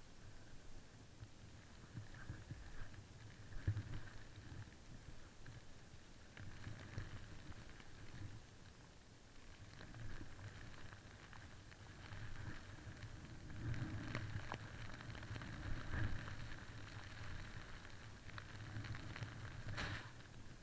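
Snowboard riding through deep powder snow: a faint low rumble and hiss that swell and fade as the board turns, with occasional small clicks.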